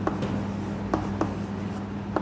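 Chalk writing on a chalkboard: a few short taps and scratches as a word is written out, over a steady low hum.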